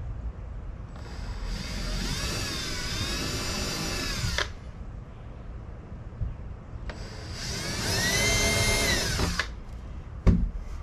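Cordless drill running twice, about three seconds each with a short pause between, its motor whine sagging and recovering in pitch as the bit bites into the metal wrap plate on the door edge.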